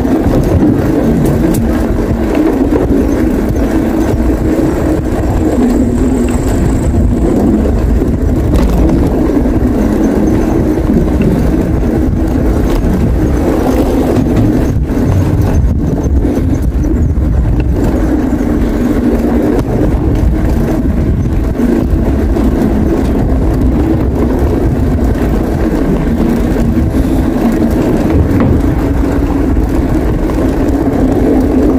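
Wind rushing over the camera microphone of a moving bicycle, a loud, steady low rumble with no change in pitch.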